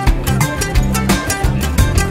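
Background music with a steady, quick beat and plucked guitar in a Latin style.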